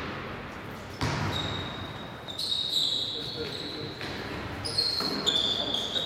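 A basketball game in a gym: a ball bouncing on the court, the first clear bounce about a second in, and from the middle on a run of short, high sneaker squeaks on the gym floor, with players' voices.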